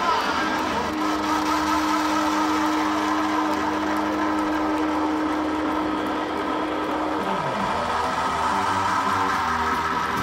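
Live rock band playing loud, with distorted electric guitars, bass and drums. A single steady note is held from about a second in until about seven seconds in.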